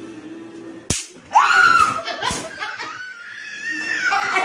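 A sharp electric snap about a second in, from an electric fly-swatter racket zapping a finger poked into it, followed at once by a woman's loud, rising scream as she jerks back from the shock.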